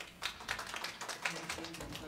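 A small audience clapping: scattered, irregular hand claps, fairly quiet.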